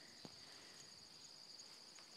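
Faint, steady high-pitched insect song with a fast pulsing, over near silence; a soft tick just after the start.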